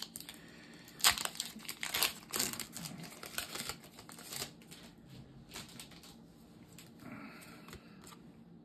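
Foil wrapper of a Pokémon booster pack being torn open and crinkled by hand: irregular crackly rustles that thin out after about four and a half seconds into fainter handling.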